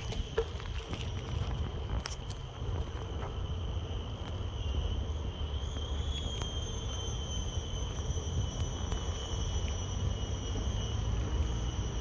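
A steady high-pitched insect drone from the park trees, wavering slightly in pitch, over a low wind rumble on the microphone from riding a bicycle. A few light clicks come in the first couple of seconds.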